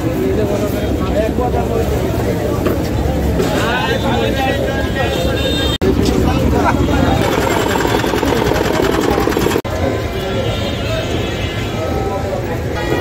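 Busy open-air vegetable market: several people talking over a steady low rumble of traffic. The sound drops out for an instant twice, once about halfway through and again a few seconds later.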